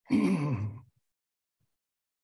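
A man's voice: one drawn-out vocal sound, like a hesitant 'uh', lasting under a second near the start.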